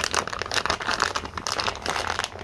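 Plastic bag of potting mix crinkling and rustling as it is gripped and tugged at by hand, with irregular crackles: the bag is not tearing open.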